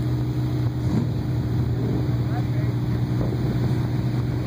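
Engine of a 1940 Ford Deluxe four-door sedan street rod running at low speed as the car rolls slowly past, a steady low engine note.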